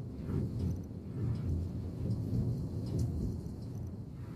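Yutong coach cruising along a highway, heard from inside the cabin: a steady low rumble of engine and road noise.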